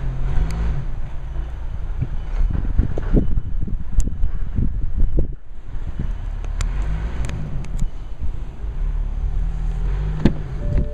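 Wind buffeting a handheld microphone: a steady low rumble, with a few small knocks and clicks and a short lull about five seconds in.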